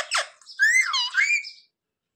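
A pet green parrot vocalizing: a brief raspy chatter at the very start, then a wavering call of about a second that rises and falls in pitch.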